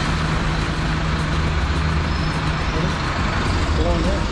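A vehicle engine running steadily at idle, a constant low hum, over a broad wash of road and traffic noise.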